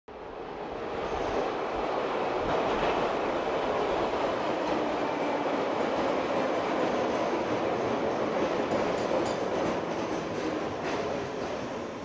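Subway train sound effect: a train running, its steady noise fading in over the first couple of seconds and holding, with a few light clicks near the end.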